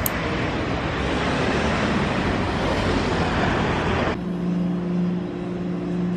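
Street traffic noise: a steady rush of passing cars. About four seconds in it cuts off abruptly and gives way to a steady low hum.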